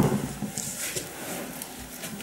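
A sharp knock right at the start, then faint clicks and rustling as a plastic electric kettle and a mug are handled close by.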